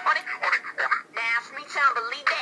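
A recorded pop-rap song playing, a voice singing or rapping over its backing track, with little bass, as from a small speaker.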